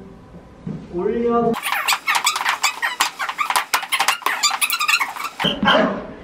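A voice briefly sings, then rapid sharp squeaks and taps of dance shoes and heels on a wooden studio floor during dance practice.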